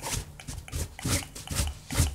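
Homemade EMF detector's buzzer giving irregular rasping crackles, several a second, as it picks up a field.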